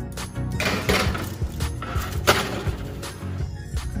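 Background music, with metal clatter and a sharp clink from a foil-lined baking sheet being slid onto an oven rack, about a second in and again a little after two seconds.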